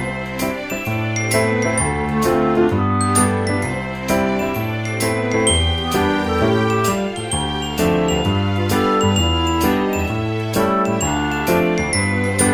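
Light instrumental background music: a bright, bell-like melody over a stepping bass line, with a steady beat.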